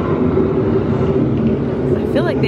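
Steady low rumble of the indoor boat ride's rainforest-scene ambience, with no sharp events.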